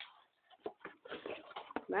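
Flattened cardboard box being handled and turned inside out: faint, scattered crackles and scrapes of the card, starting about half a second in.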